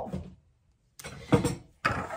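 Short lengths of PVC pipe and fittings being handled and knocked on a wooden tabletop: a few light clatters starting about halfway through, then a sharper click just before the end.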